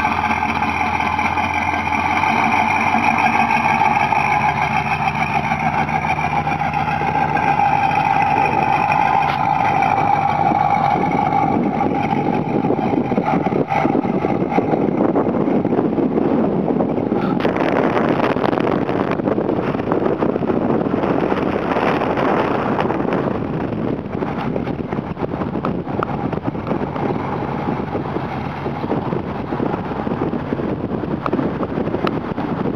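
Chevrolet Camaro's engine running steadily as the car drives off, its note fading as it moves away. From about halfway through, wind rushing on the microphone takes over.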